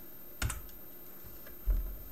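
A single sharp computer-keyboard keystroke about half a second in, as the password entry is submitted, then a dull low thump near the end.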